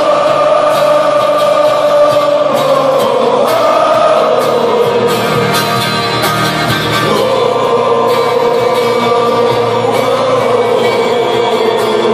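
A rock band playing live in a hall, with many voices singing long held notes that slowly fall in pitch over drums and guitars, recorded loud from within the crowd.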